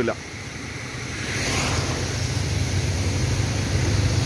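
A motor vehicle engine running, growing louder about a second in, over a steady rushing noise.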